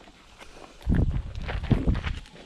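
Footsteps crunching on a gravel driveway, starting about a second in as a few uneven steps.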